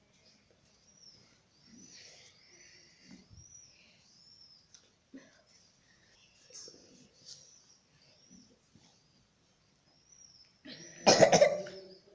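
A person coughs loudly once near the end. Before that, only faint sounds with soft, short high chirps.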